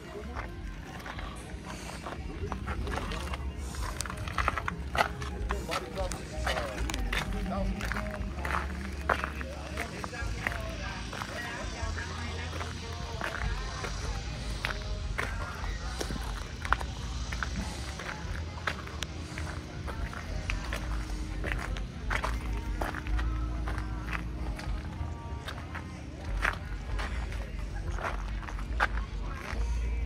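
Outdoor crowd ambience: background voices and music, with scattered clicks and footsteps and irregular low rumbling, like wind on the microphone.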